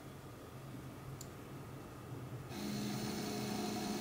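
Faint low electrical hum of a PC power supply running a car stereo on the bench. About two and a half seconds in it steps up to a steadier, louder hum with hiss as the setup powers up.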